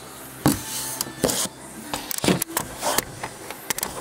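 Handling noise: a handful of irregular knocks and rubs close to the microphone, about five sharp ones over four seconds, as the recording phone is moved and covered by a hand.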